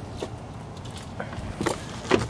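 Light handling clicks and knocks, a few of them, the clearest near the end, as someone climbs into a pickup's open cab. Under them is a steady background noise.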